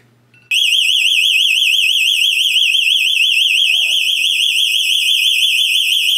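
A home security system's alarm siren going off: a loud, high-pitched, rapidly warbling tone that starts abruptly about half a second in and holds steady. The system has been triggered and has not yet been silenced at the keypad.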